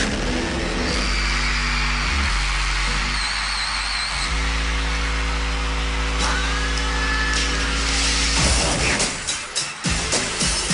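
Live concert music building up: a deep held synth bass note and sustained synth chords over a steady hiss, a sweep about eight and a half seconds in, then a pounding beat starting near the end.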